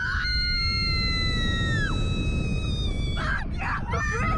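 Two women screaming together as a Slingshot reverse-bungee ride launches them skyward: two long, high screams, one dropping off after about two seconds and the other after about three, followed by short ragged cries. A low rumble of rushing wind on the microphone runs underneath.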